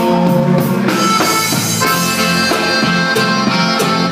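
Live conjunto music: a button accordion plays a sustained melody over strummed string accompaniment and a steady beat.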